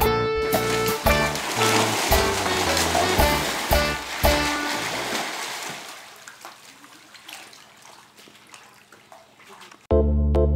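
Background music with a steady beat over water splashing and churning as a crocodile thrashes in a muddy pool. The music drops out about halfway through, and the splashing fades away toward the end.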